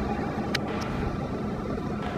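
Steady low background rumble, with a sharp click about half a second in and a fainter one just after.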